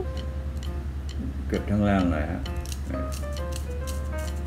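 Background music with a brief voice about halfway through, over short, crisp scraping strokes of a razor shaving beard stubble along the jaw.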